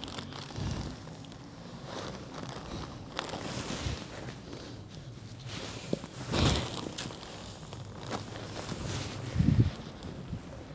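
Plastic bag rustling as crumbly worm compost is shaken out and scattered onto the soil in a planting hole, with a louder rustle about six and a half seconds in and a brief low bump near the end.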